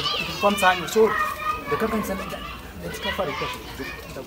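Animated speech: a man and a woman talking heatedly at each other in raised voices, loudest in the first second or two and dropping off towards the end.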